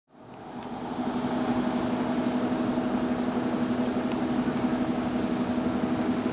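City bus diesel engine idling with a steady hum that holds one pitch, fading in over the first second.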